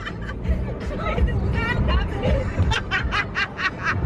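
Laughter inside a car: a girl's giggling breaks into a fast run of short ha-ha bursts in the second half. Music plays underneath.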